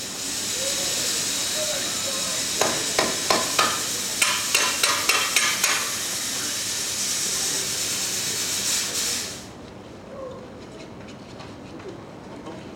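A loud steady hiss of rushing gas, like a pressurised jet or a steam blast, that cuts off suddenly about nine seconds in. A quick run of sharp knocks sounds over it in the middle.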